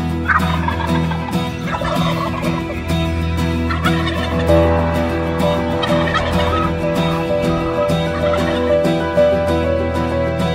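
Wild turkey gobbling several times in the first half, over steady instrumental intro music.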